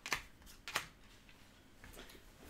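Game cards being laid down one at a time onto a table: a few quiet, short card slaps and clicks.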